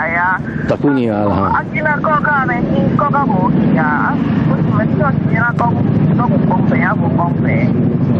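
A woman speaking over a telephone line, with a steady low hum from the line running under her voice.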